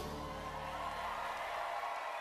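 A live band's last chord rings out and dies away in about the first second, leaving crowd noise from the concert audience that slowly fades.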